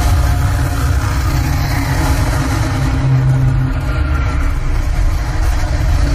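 Loud intro sound design under an animated title sequence: a steady, dense low rumble with held tones above it, unbroken throughout.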